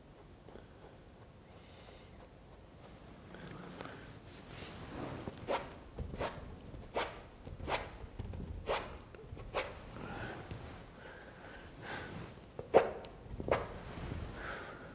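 A cloth rag rubbed against a stretched oil-painting canvas in short, regular strokes, about one every 0.7 seconds, with two more near the end.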